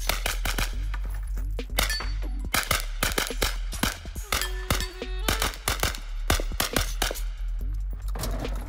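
Rapid gunfire, strings of sharp shots several a second, from a competition shooter engaging targets, over background music with a steady bass line.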